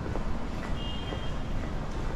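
Steady low rumble of an airport terminal walkway heard while walking, with faint ticks and a short high electronic beep about a second in.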